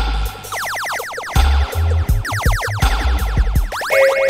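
Lickshot dub-siren synth, a DIY build of Nold's design run through a Boss RDD-10 delay, fired in three bursts of rapid repeating pitch sweeps, about ten a second, each burst trailing off in delay echoes. Under it plays a reggae backing track with bass and drums.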